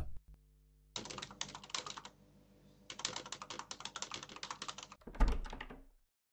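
Rapid typing on a computer keyboard in two runs, each a second or two long, with a short pause between, then a thump near the end.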